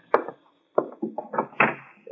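Radio-drama sound effect of a door being opened on an old broadcast recording: a sharp latch click, then a short run of about five wooden knocks and rattles.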